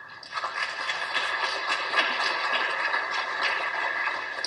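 Audience applauding: a dense, even patter of many hand claps.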